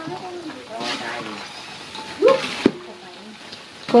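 Grasshoppers deep-frying in oil in an aluminium wok, a steady sizzle stirred with a wire strainer; they are not crisp yet. Brief voices break in about two seconds in.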